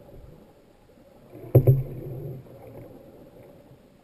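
A sharp knock heard underwater about one and a half seconds in, ringing on with a low hum for under a second, over muffled underwater water noise.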